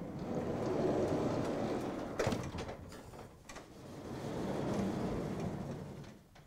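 Sliding chalkboard panels being moved in their frame: two long rumbling slides with a sharp knock between them, about two seconds in.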